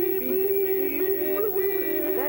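A man's voice holding a long, slightly wavering sung note, a vocal imitation of the noise of a hospital machine.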